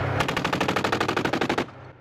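A long rapid burst of machine-gun fire, evenly paced, over the steady rumble of a tank's engine. The burst lasts about a second and a half and stops abruptly.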